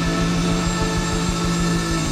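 Live blues band holding one long sustained chord, led by electric guitar, over a fast low rumble from the drums.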